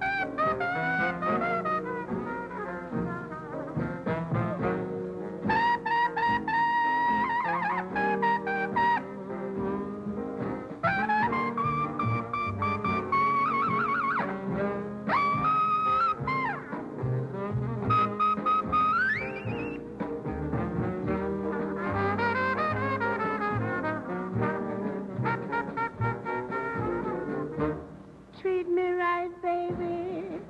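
Trumpet solo in a slow jazz blues with a small band behind it, moving between long held notes and quick runs. About two-thirds of the way through comes a fast rising slur up to a high note.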